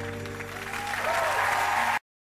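Dance music ending on a long held chord while a studio audience breaks into applause, which swells and grows loudest in the second half.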